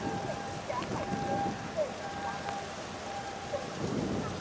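Outdoor harbour ambience: a steady rushing noise like wind or rain on the microphone, with a faint steady whistle-like tone that stops and starts, and scattered faint short chirps.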